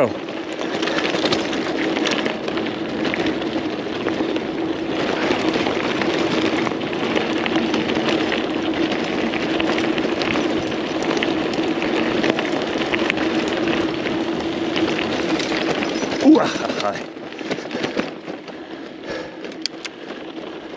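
Mountain bike rolling down a dirt and gravel track, with tyres crunching on loose stones, the bike rattling and a steady buzzing hum. A sharp knock comes about 16 seconds in, and the noise eases off soon after.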